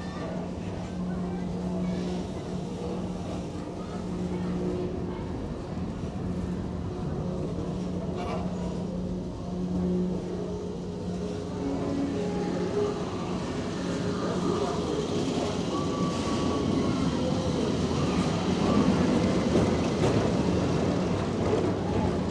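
Tomorrowland Transit Authority PeopleMover car running along its track: a steady low hum and rumble that grow louder in the second half.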